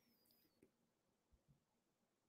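Near silence, with only a very faint high tone gliding slightly downward in the first half-second.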